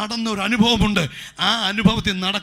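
Only speech: a man preaching in Malayalam into a handheld microphone.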